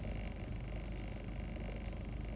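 Steady low hum and hiss inside a car cabin, with no distinct events.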